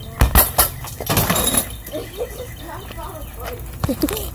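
Three quick sharp knocks about a fifth of a second apart, then a short rattling clatter about a second in, followed by faint talk.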